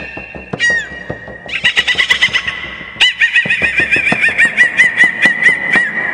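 Jaw harp (Sakha khomus) played in quick plucked pulses, its high twanging tone bent into rapid chirping bird-like calls, about five a second in the second half.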